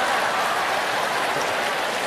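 Large theatre audience laughing and applauding, a steady wash of crowd noise.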